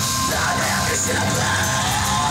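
Death metal band playing live: distorted electric guitar, bass guitar and drums, with harsh shouted vocals over them.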